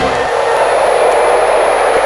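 A loud, steady rushing noise with a thin high whine running above it.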